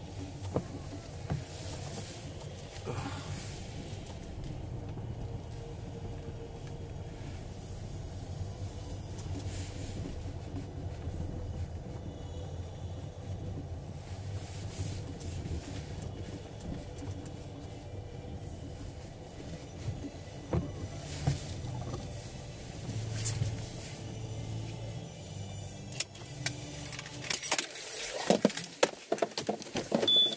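Steady low engine and road hum inside a car cabin moving slowly. In the last few seconds the hum drops away and a quick run of sharp clicks and knocks follows.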